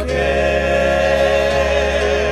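Gospel choir singing, voices holding one long note that starts at the beginning and begins to waver near the end, over a steady low accompaniment.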